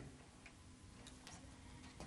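Near silence: faint room tone with a few soft, irregular clicks.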